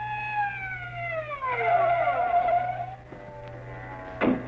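Police car siren sound effect, held on one pitch and then winding down, its pitch sliding steadily lower over about two seconds before fading out. A low steady hum runs underneath.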